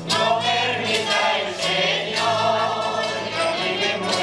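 A group of voices singing a habanera in unison with a rondalla of guitars and small plucked string instruments. The singing comes in right at the start over the strummed accompaniment.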